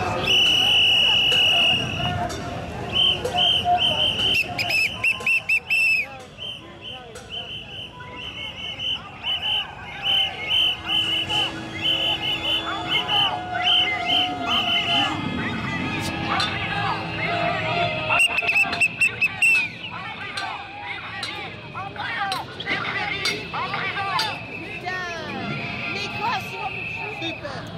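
Whistles blown repeatedly in a marching crowd: a long high blast at the start, then runs of short rhythmic blasts, several a second, with voices and crowd chatter underneath.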